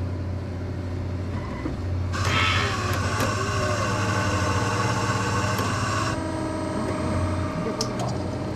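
Franke A800 automatic coffee machine making a café latte: a loud, high whirring starts about two seconds in and stops suddenly about four seconds later, giving way to a lower steady hum from the machine.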